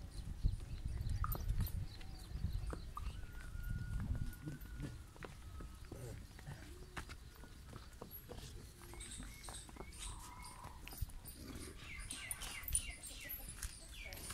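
Friesian × Sahiwal cross cow walking on dry dirt while being led on a chain: scattered hoof steps and light clicks over a low rumble.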